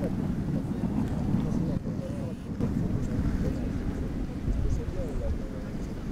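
Wind buffeting the microphone: a steady, uneven low rumble, with faint voices in the background.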